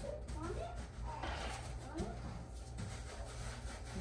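Faint voices in the background over a low steady hum, with a soft rustle of a hand pressing and smoothing dry live sand across the bottom of a glass aquarium.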